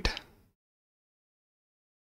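The end of a man's spoken word, then dead silence.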